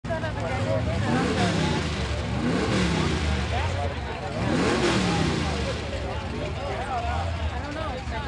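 Mud-drag truck's engine revving up and down about three times while standing at the start line, over a murmur of crowd voices.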